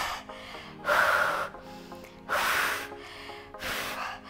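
A woman breathing hard with effort while holding a glute bridge: three loud, forceful breaths about a second and a half apart. Background music runs quietly underneath.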